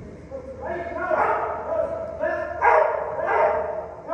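A dog barking, a string of about four high-pitched barks about a second in and near the end.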